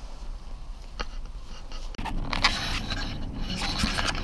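Scraping and rubbing noise close to the microphone from a body-mounted camera against clothing while walking, with a sharp click about a second in. The sound breaks off abruptly about two seconds in and comes back louder, with more scraping and clicks.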